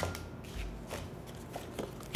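Fortune-telling cards being handled and laid out on a cloth-covered table: a sharp card snap at the start, then a few short, soft rustles and clicks as cards are picked up and set down.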